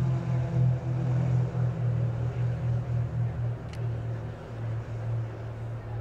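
Four Extra 330LX aerobatic planes' six-cylinder Lycoming piston engines and propellers at full takeoff power, a steady low drone that slowly fades as the formation lifts off and climbs away.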